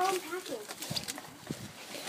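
Voices of a small group of people, a shout trailing off and then quieter talk, with a couple of short clicks.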